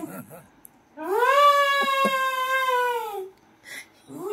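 A long, high wailing call about a second in, rising at the start and then sinking slowly, lasting a little over two seconds.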